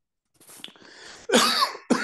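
A man coughing twice in quick succession in the second half, after a faint breath in.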